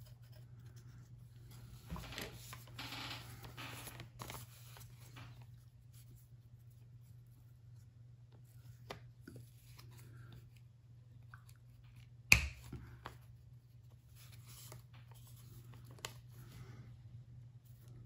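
Faint handling of plastic and acrylic parts as small rubber-tyred plastic wheels are pressed onto the shafts of yellow plastic gear motors on a robot chassis, with one sharp click about twelve seconds in. A steady low hum sits underneath.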